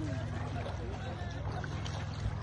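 A steady low hum, with faint voices in the distance.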